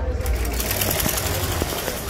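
Sewing machine running at a tailor's stall, a fast, even clatter.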